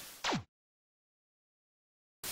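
A brief falling sweep from high to low, a switch-off sound effect, cut off about half a second in; dead digital silence for the rest.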